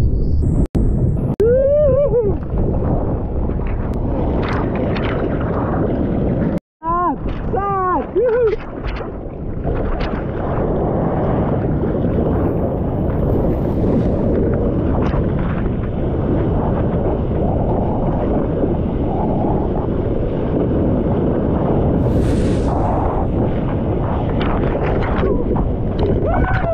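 Breaking-wave whitewater rushing and churning around a surfer's GoPro camera, with water and wind buffeting the mic in a loud, steady roar. Two brief whooping calls rise and fall in pitch in the first ten seconds, and the sound cuts out for a moment about one second in and again about seven seconds in.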